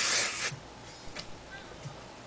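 A single short burst of hairspray misted onto the hair: one hiss lasting under a second at the start.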